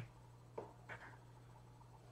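Near silence: room tone with a faint steady hum, broken by two faint computer keyboard key clicks about half a second and a second in, as a spreadsheet formula is entered.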